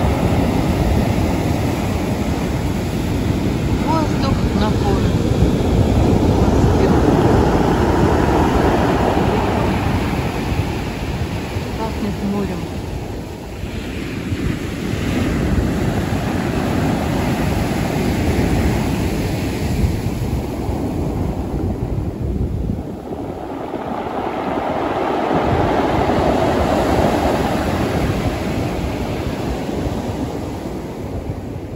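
Sea surf breaking on a pebble beach. The loud rush of breaking waves swells and eases over several seconds, again and again.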